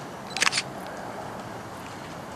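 ČD class 810 diesel railcar approaching slowly, its engine a faint steady rumble, with a quick clatter of three or four sharp clicks about half a second in.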